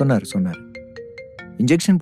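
A mobile phone ringtone: a simple electronic melody of short stepped notes, starting about half a second in, with a man's voice over it at the start and near the end.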